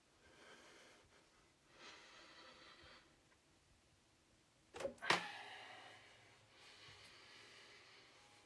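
Soft, heavy breaths, then two quick thumps against a wooden interior door about five seconds in, followed by more breathing.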